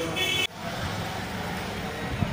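Steady background traffic noise, a low, even rumble. In the first half second a brief high-pitched tone is heard, and it cuts off suddenly.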